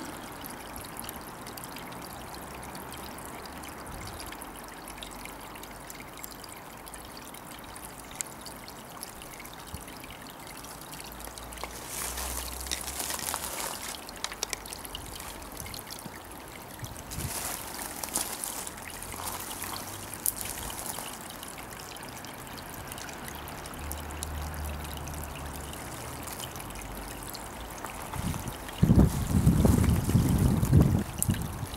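Water trickling steadily down a small stone cascade into a garden pond. A louder low rumbling comes in a second or two before the end.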